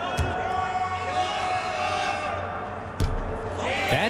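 A basketball bounced on a hardwood court at the free-throw line: one thump just after the start and another about three seconds in, over a steady low arena hum and faint murmur.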